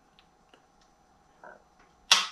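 A few faint, short clicks from a Sig Sauer P365's trigger as it is worked and resets under the finger, over near silence.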